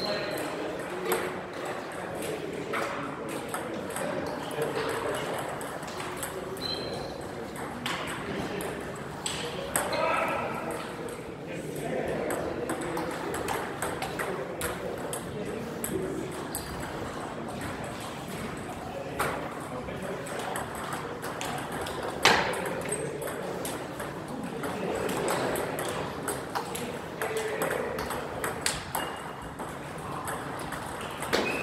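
Table tennis ball bouncing in scattered single sharp clicks, the loudest about two-thirds of the way through and a few more close together near the end, over a background murmur of voices.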